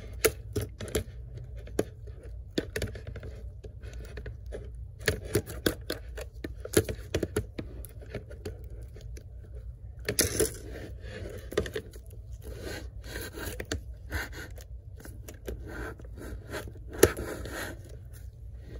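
Small clicks, taps and scrapes of metal laptop parts as a MacBook Air's replacement display hinge is worked into place in the aluminium base, with a denser scraping spell about ten seconds in and another near the end.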